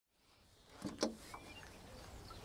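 Faint outdoor ambience fading in from silence, with two short knocks close together about a second in and a few faint high bird chirps.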